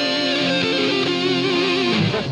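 Electric guitar music: a held, slightly wavering chord that stops at the end.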